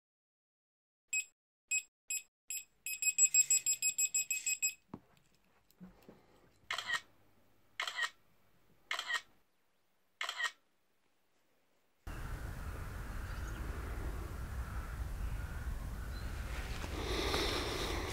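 Title sound effects: four short electronic beeps, then a fast run of beeps lasting about two seconds. After that come four camera-shutter clicks about a second apart, then silence. From about twelve seconds in there is a steady low background hiss.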